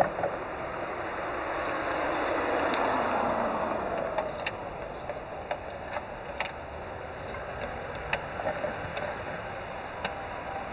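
A vehicle passing by, its noise swelling and then fading with a falling pitch over the first few seconds, followed by a scatter of small clicks and knocks as an acoustic guitar is handled and lifted into playing position.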